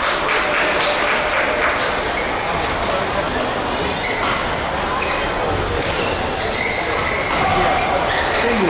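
Busy indoor badminton hall ambience: voices and chatter, with many short sharp clicks of rackets striking shuttlecocks.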